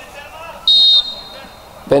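Referee's whistle: one short, shrill blast about two-thirds of a second in, with a faint trace of the tone lingering afterwards.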